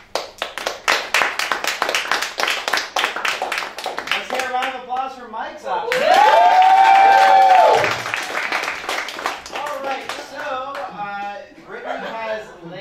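Audience applauding for about four seconds. A few seconds later comes more clapping, topped by one long, loud held whoop from a single voice.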